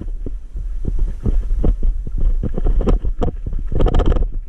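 Ride noise from an e-bike on a rough dirt and rock track: a steady low rumble on the camera microphone, broken by frequent irregular knocks and rattles as the bike jolts over stones, with a burst of them near the end.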